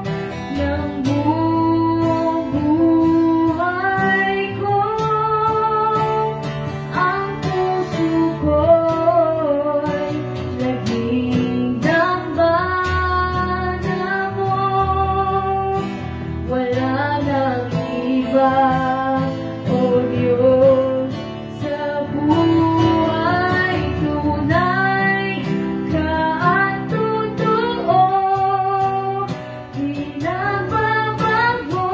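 A young woman singing into a microphone, accompanied by acoustic guitar; about eighteen seconds in, she sings the line "I'm not afraid to die."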